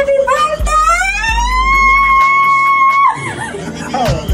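A high voice slides up and holds one long sung note, then breaks off about three seconds in, over music with a deep bass beat.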